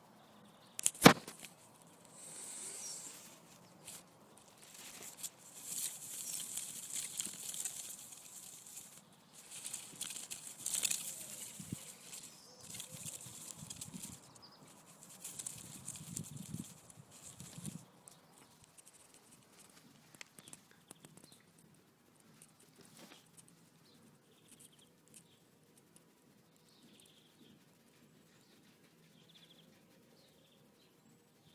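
A sharp click about a second in, then spells of rustling and brushing noise that die away to near quiet after about eighteen seconds, with a few faint ticks.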